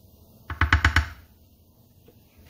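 A plastic spoon tapped quickly five or six times against the rim of a container, knocking off the batter ingredient that clings to it. The knocks come in one short run about half a second in.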